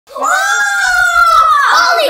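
A person's long, loud, high-pitched scream, held steady for most of two seconds and dipping slightly in pitch near the end.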